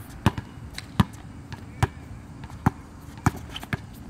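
A basketball dribbled on a hard outdoor court: five loud bounces, roughly one every 0.8 seconds, with a few fainter bounces between them.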